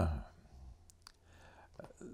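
A man's drawn-out "uh" trailing off, then a pause in a quiet room broken by a few faint clicks.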